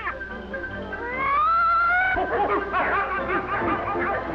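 Early sound-cartoon soundtrack: music, then a long rising wail about a second in, followed by a rapid jumble of short animal yelps and squeals.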